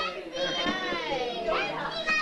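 Young children's high-pitched voices calling out and chattering, with pitch gliding up and down.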